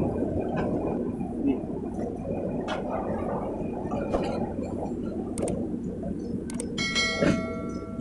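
Light clicks and knocks of a truck's cylindrical air filter element being pushed and seated into its metal air cleaner housing, over a steady background rumble. A brief ringing chime sounds near the end.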